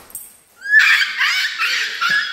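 A dog yelping and whining in repeated high-pitched squeals that bend up and down, starting a little under a second in.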